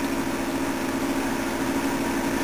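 Steady machine hum with a faint steady tone running under it, unchanging throughout.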